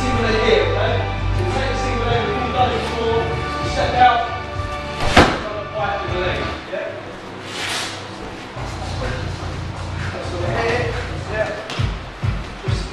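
Music playing in the background, with one loud thud about five seconds in as a person is taken down onto the padded gym mat.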